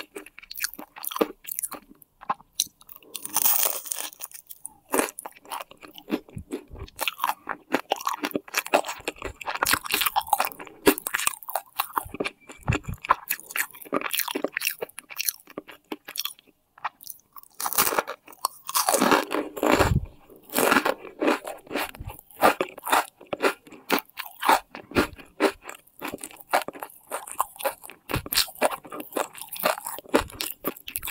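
Biting and chewing a flaky pastry egg tart: an irregular run of small crisp crunches, with a louder, denser stretch about two-thirds of the way through.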